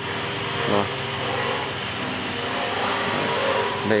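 Steady machinery hum with an even rushing noise underneath, with no breaks or strikes, as from workshop machines running.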